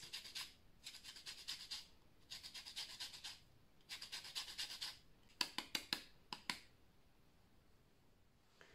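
Lemon rind being zested on a small handheld metal grater: three runs of quick, rasping strokes, followed by a few sharp clicks.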